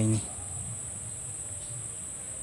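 Insect chorus: a steady, high-pitched drone that runs on without a break.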